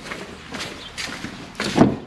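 A few soft footsteps, then a louder handling noise near the end as a car's rear seat back is reached for and worked.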